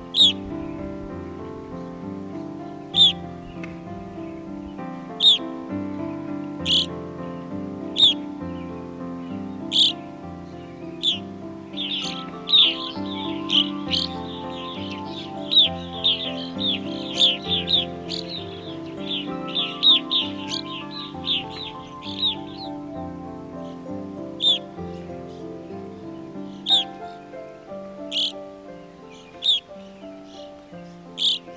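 Evening grosbeaks calling: short, sharp calls every second or two, with a rapid run of many calls in the middle, over soft instrumental background music.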